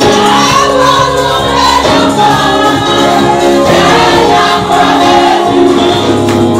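Loud gospel music with a choir singing over a steady instrumental backing.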